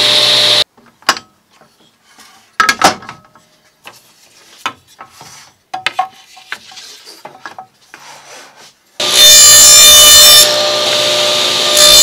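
A Ridgid table saw runs briefly and cuts off, followed by several seconds of wooden boards being handled and slid on the saw table, with scattered knocks and clicks. About nine seconds in, the saw runs loudly again as a board is fed along the fence over the blade, making a shallow 3/16-inch-deep pass to trim out the tongue.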